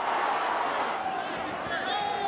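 Stadium crowd noise at a football match: a steady hubbub of many voices, easing slightly about halfway through.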